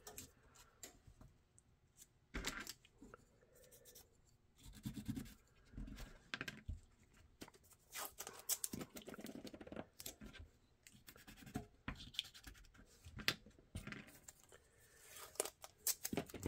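Blue painter's tape being pulled from the roll, torn and pressed down by hand onto a mold plate: faint, scattered short rips and scratches.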